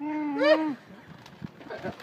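A drawn-out, muffled voice from a man with his mouth stuffed full of marshmallows, lasting under a second at the start, with a rise in pitch near its end. Voices start up again near the end.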